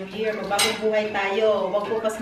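Cutlery and dishes clinking at a dinner table, with one sharp clink about half a second in, under a person's voice.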